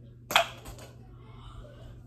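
A hollow plastic practice golf ball striking a plastic cup with one sharp click, followed by a few lighter clicks as the ball and cup rattle and the cup tips.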